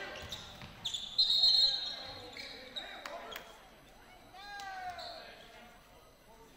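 Referee's pea whistle blown in one short blast about a second in, stopping play for a foul. A basketball bounces on the hardwood floor, and voices call out in the gym, one rising and falling shout near the end.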